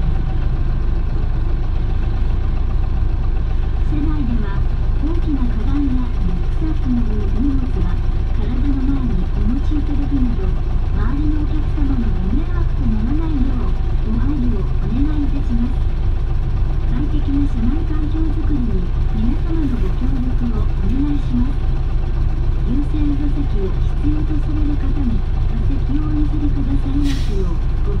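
Inside an Isuzu PJ-LV234N1 city bus on the move: the diesel engine and road give a steady low drone, with people's voices talking over it. A short hiss comes near the end.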